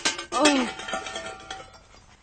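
Cartoon fall and crash: a sharp impact with a few clattering knocks, then a short cry falling in pitch about half a second in, fading away.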